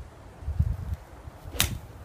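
Golf iron swung through and striking a ball off grass turf: a single sharp click of the clubface on the ball, about one and a half seconds in.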